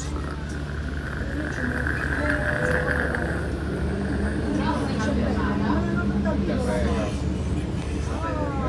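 Electric tram heard from inside while pulling away and running: a steady low hum with a high whine that swells over the first few seconds and then fades, with faint voices.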